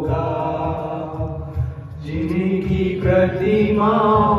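A man singing a Hindi devotional song (bhajan) in long held notes, accompanied by an electronic arranger keyboard; the melody steps up to a higher note about halfway through.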